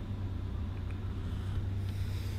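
Low, steady hum of a 2011 Volvo S60 T6's turbocharged six-cylinder engine idling, heard from inside the cabin.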